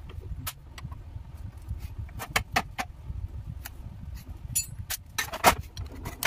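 Metal parts of a dismantled starter motor clinking and knocking as a long screwdriver is worked inside the housing: scattered sharp clicks, with the loudest cluster near the end, over a steady low rumble.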